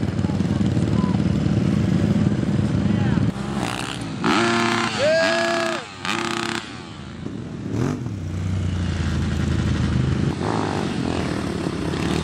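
Dirt bike engines running on the track, loudest in the first three seconds, with a lower rumble returning after about 8 s. In the middle, from about 4 to 6.5 s, a loud drawn-out yell rises and falls over the engine sound.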